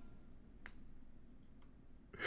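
Near silence, room tone, with a faint short click about two-thirds of a second in and a fainter one near the end.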